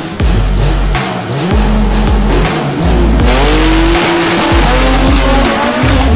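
Music with a heavy, repeating deep bass beat, mixed with the sound of front-wheel-drive drag race cars running down the strip.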